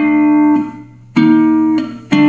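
Three-string fretless cigar box guitar played with a metal slide, open-G tuned. A note slid up into pitch rings for about half a second and fades. About a second in, a second strike sounds two notes together and rings until near the end.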